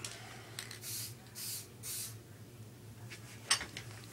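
Aerosol spray paint can giving three short bursts of hiss about half a second apart, followed near the end by a single sharp click.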